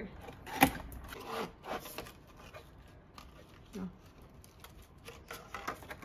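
Cardboard box being opened and handled: a sharp knock about half a second in, then scattered scraping and crinkling of the flaps and packaging.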